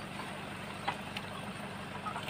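A low steady hum in the background, with a couple of light clicks about a second in from a hand tool working the slats of a bamboo chicken crate.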